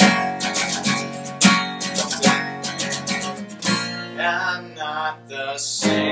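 Acoustic guitar strummed in a steady rhythm over an acoustic bass guitar; after about three and a half seconds the strumming eases and a voice starts singing over the guitars.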